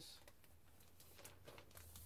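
Near silence: a few faint rustles and light clicks of a vinyl LP jacket being handled, over a low steady hum.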